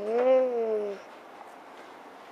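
A cat meowing: one long, drawn-out meow that rises a little and falls in pitch, ending about a second in.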